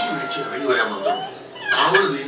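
Toddler crying: a drawn-out wail that sags slightly in pitch and trails off, a short rising whimper, then louder sobbing again near the end.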